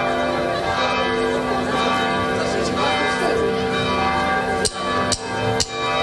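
Logo-sting music: a sustained, bell-like ringing chord held steady, with about four sharp struck notes in the last second and a half.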